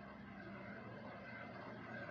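Faint city street ambience, a low even hum of distant traffic, slowly fading in.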